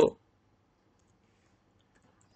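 Near silence with a faint click or two from a computer keyboard.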